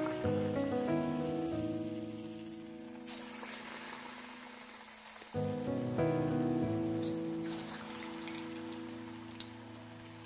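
Battered jackfruit pieces deep-frying in hot oil in an iron kadai, a steady sizzle. Background music plays over it, its chords struck at the start and again about five seconds in, fading each time.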